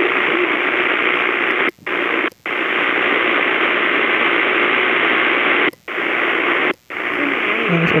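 AM radio receiver giving out loud, steady static hiss between stations on the medium-wave band at night. Four times the sound drops out for a moment, about a second apart and then a few seconds apart, as the set is tuned up the band.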